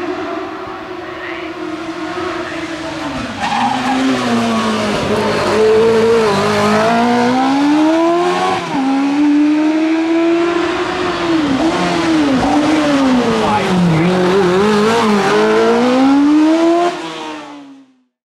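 Imp spaceframe saloon hillclimb car's engine at racing revs, growing louder as the car climbs toward the microphone. The pitch rises and then drops sharply several times. The sound fades out near the end.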